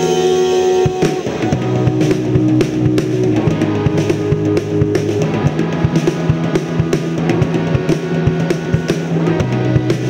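Instrumental break in a rock song with no vocals: a full drum kit, with kick and snare, plays a steady beat under sustained guitar chords.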